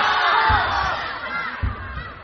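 Studio audience shouting and cheering, many voices at once, loudest at the start and dying down over the two seconds. Under it runs backing music with a low beat about once a second.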